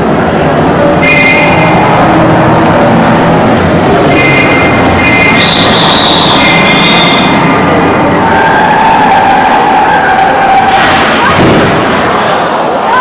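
A car sound effect played loudly over the hall's speakers: an engine running with high squeals, like screeching tyres, ending in a loud crash-like burst near the end.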